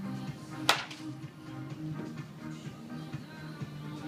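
A single sharp crack of a wooden baseball bat hitting a soft-tossed ball, about two-thirds of a second in, over steady background music.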